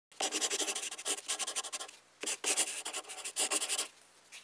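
Pen drawing on sketchbook paper: two stretches of rapid short strokes, each nearly two seconds long, with a brief pause between.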